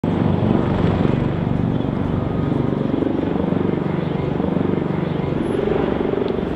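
Outdoor city street noise: a steady, loud low rumble with a rapid flutter in it.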